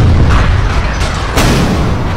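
Sound-effect explosions: heavy booming blasts over a continuous low rumble, with sharp hits about one second in and again, the loudest, just after.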